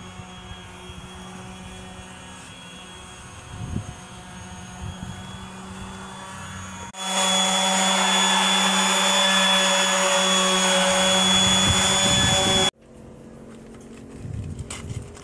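Random orbital sander running on a painted metal panel: a loud, steady whine with the hiss of the abrasive disc, cutting off suddenly near the end. Before it starts, a quieter steady low hum.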